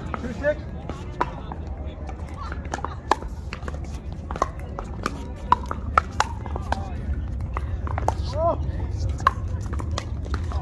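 A pickleball rally: sharp pops as hard paddles strike the plastic ball, several of them at irregular intervals, with the ball bouncing on the hard court and shoes on the surface. Under it runs a steady low rumble of wind on the microphone.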